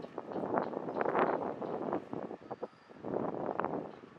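Wind buffeting the microphone aboard a boat moving along the river, in uneven gusts that swell and fade, with a few short ticks.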